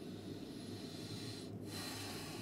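A steady low electrical hum under an even hiss, the noise of an open audio line with no one speaking; the upper hiss dips briefly about one and a half seconds in.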